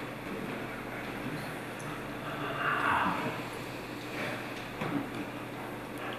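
Quiet hall room tone with a steady low hum, a soft hushed sound about three seconds in, and a couple of faint ticks near the end.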